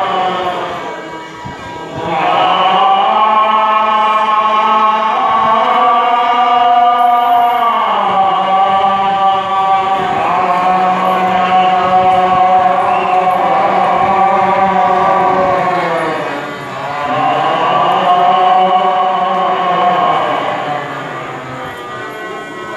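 Devotional chanting in long, sustained vocal phrases that swell and fall away, dipping briefly about a second and a half in and again near the end.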